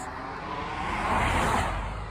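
A road vehicle passing by, its noise rising to a peak about a second and a half in and then fading away.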